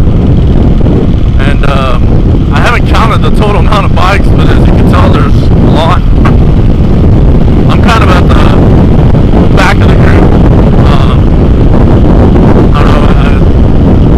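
Loud, steady wind buffeting on a helmet-mounted microphone at road speed, with the Yamaha WR450F's single-cylinder four-stroke engine running underneath.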